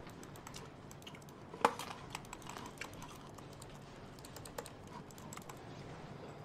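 Laptop keyboard being typed on in quick, uneven runs of key clicks, with one sharper, louder clack a little over a second and a half in.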